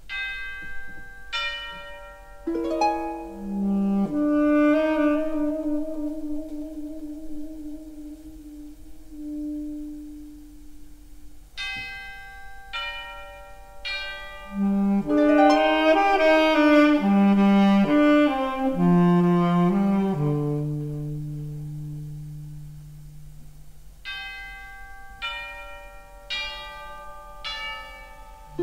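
Orchestra and jazz big band playing slow, sustained music. Tubular bells are struck in small groups of ringing strokes near the start, around the middle and near the end, and held brass and reed chords swell and fade between them.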